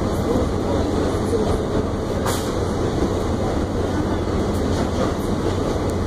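R68 subway car running through the tunnel, heard from inside the car: a steady rumble of wheels and running gear on the rails. A single sharp click comes a little over two seconds in.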